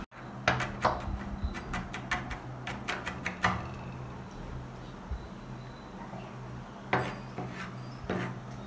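Chef's knife chopping garlic on a plastic cutting board: a flurry of quick sharp knocks in the first few seconds, fewer and softer strokes through the middle, and two louder ones near the end, over a steady low hum.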